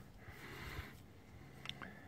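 Quiet background with a faint hiss, and one small click about three-quarters of the way through.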